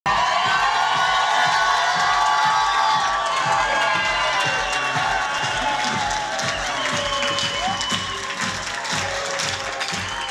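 Music playing while a crowd cheers and claps, the clapping standing out more in the second half.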